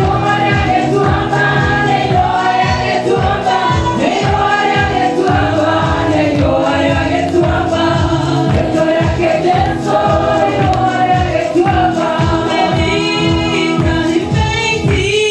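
Gospel worship music: a group of voices singing a song over a steady beat.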